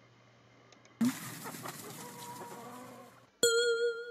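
Recorded farmyard sound effect from a textbook audio track: clucking hens over a burst of yard noise, cut off after about two seconds. Then a loud, bright chime rings out about three and a half seconds in.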